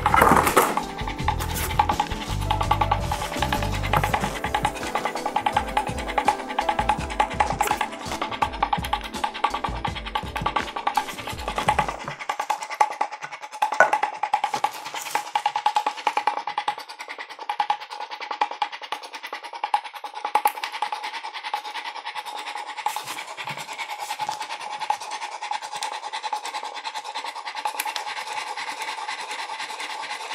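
Electric automatic male masturbator running, its single motor driving the rotating, thrusting sleeve: a steady whine with rapid fine clicking.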